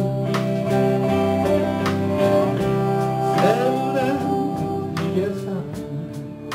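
Live band playing a number on electric guitars, bass guitar and drums, with held guitar notes over a steady drum beat.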